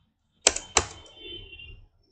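Two sharp clicks of computer keyboard keys, about a third of a second apart, the second a little weaker.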